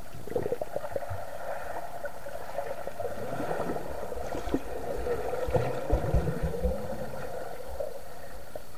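Pool water heard underwater as a freestyle swimmer passes close: muffled churning and bubbling from the strokes and kick, with a cluster of low thumps about six seconds in.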